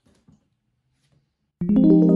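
Yamaha DX7-IID FM synthesizer on its E.Piano 3 electric-piano patch: a chord of several notes struck about one and a half seconds in and held, ringing on and fading slowly. Before it there are only a few faint soft sounds.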